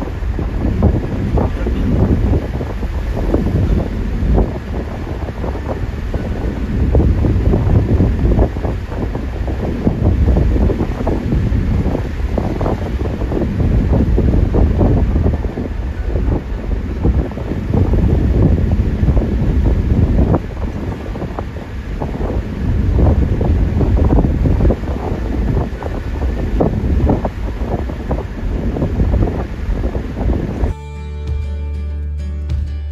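Wind buffeting the microphone over the rumble of a vehicle driving at road speed, swelling and easing unevenly.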